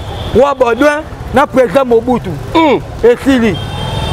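A man talking loudly and animatedly, with a low rumble underneath.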